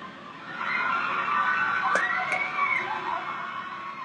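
A drawn-out, high-pitched vocal sound that swoops up and back down about halfway through, with a couple of sharp clicks near the middle.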